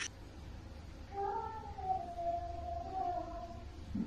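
A cat meowing: one long, drawn-out call starting about a second in and lasting about two seconds, wavering and sinking slightly in pitch, over a low steady hum.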